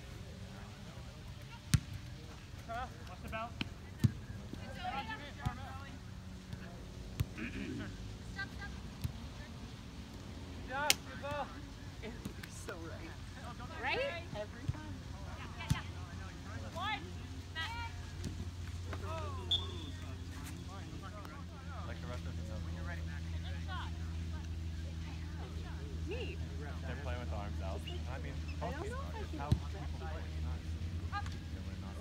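Soccer game in play: players' distant shouts and calls, with a few sharp thuds of the ball being kicked. A steady low rumble comes in about two-thirds of the way through.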